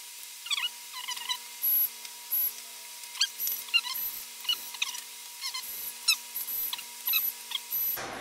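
Screwdriver backing out the steel bottom-cover screws of a laptop: a series of short, irregular squeaks and clicks, with brief high-pitched whines coming and going between them.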